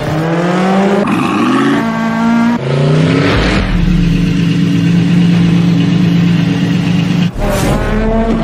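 A performance car engine revving hard, its pitch climbing in three quick rises in the first few seconds, then held steady at high revs for about four seconds. It cuts off sharply near the end and climbs again.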